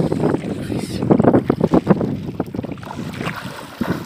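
Water splashing irregularly as people wade and run through shallow river water, with wind buffeting the microphone.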